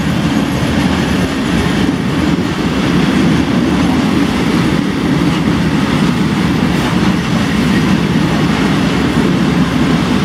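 Freight train of open coal wagons passing close by, a steady loud rumble of steel wheels on the rails.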